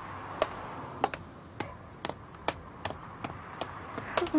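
Hard-soled footsteps on pavement: sharp single clicks about every half second, over a faint steady background.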